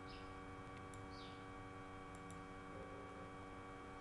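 Faint, steady electrical mains hum with a stack of even overtones, joined by a couple of short high falling chirps and light clicks.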